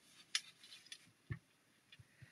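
A few faint taps and a soft knock as a sponge ink dauber is dabbed onto cardstock and onto a glass craft mat: a sharp click about a third of a second in, a little soft rubbing, then a short knock.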